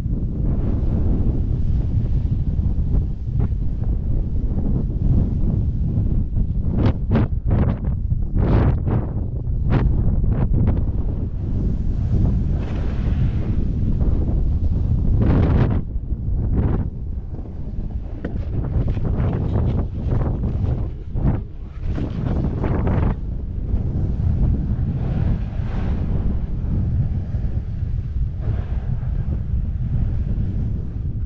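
Wind blowing across the camera's microphone: a loud, steady low rumble with a run of short, sharp gusts about a quarter to a third of the way in and another near halfway.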